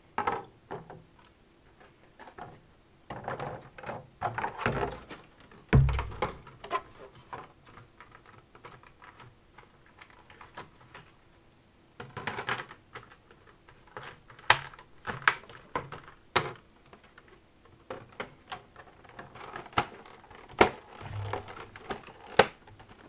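Thin clear plastic packaging trays being handled and pulled apart: irregular crinkling, clicking and tapping of the plastic, with one heavier thump about six seconds in.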